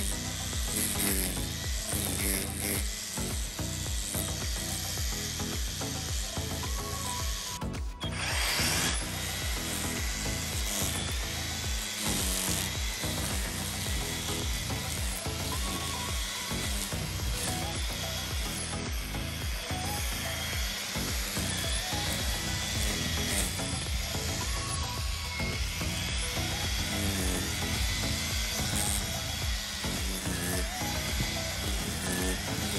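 Battery-powered EGO string trimmer with an Echo Speed-Feed 400 head running, its spinning line cutting grass and weeds. The sound drops out briefly about eight seconds in.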